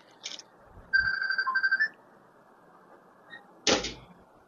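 An electronic phone alert tone beeping in a few quick pulses on one steady pitch for about a second, followed near the end by a short, sharp noise.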